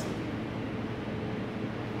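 Steady background hum and hiss of the room with a faint steady tone, no distinct events.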